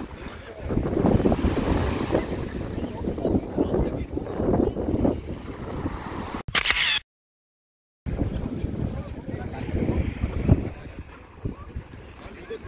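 Wind buffeting the microphone with low, gusty rumbling over the wash of small breaking waves, and voices in the background. A short hiss about six and a half seconds in is followed by about a second of dead silence, an audio cut.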